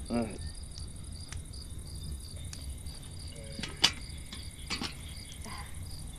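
Crickets chirping in a steady, evenly pulsing chorus, with a few brief sharp clicks, the loudest about four seconds in.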